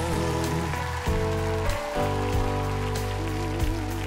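Live band playing a slow ballad: sustained chords over a bass line, with light drum and cymbal hits and a wavering held note near the end.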